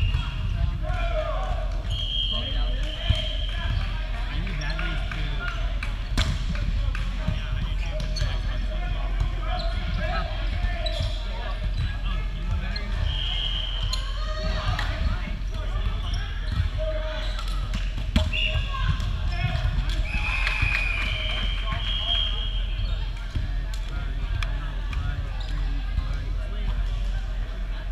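Indoor volleyball play on a hardwood gym court: sharp hits of the ball, loudest twice (about three seconds in and again past the middle), with short high squeaks of sneakers on the floor and players calling out, all echoing in a large hall.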